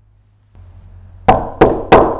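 A quick run of heavy knocks, three in the last second, about a third of a second apart, over a low steady hum that comes in about half a second in.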